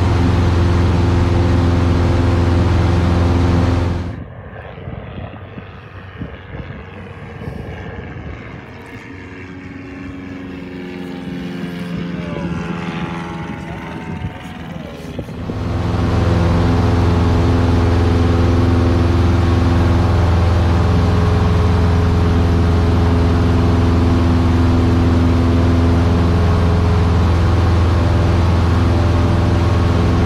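Light single-engine airplane's piston engine and propeller running steadily at climb power, heard loud inside the cabin. From about four seconds in, for about twelve seconds, the engine drone gives way to a quieter, duller, wavering sound before the steady engine sound returns.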